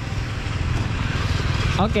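A low, steady rumble of motor vehicle engines running.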